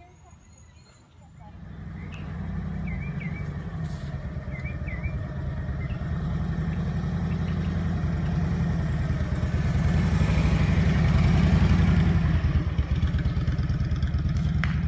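Motorcycle engine running at low, steady speed as the bike approaches and passes close by, growing louder for most of the stretch and peaking a couple of seconds before the end.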